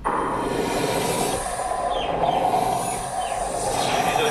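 Sound played back through the 11-inch M1 iPad Pro's four-speaker system, starting suddenly: a loud, steady, dense wash with a few short high chirps, demonstrating the speakers' volume and bass.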